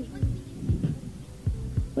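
Hip-hop beat: a run of deep kick drums that drop in pitch, several a second, over a held low note.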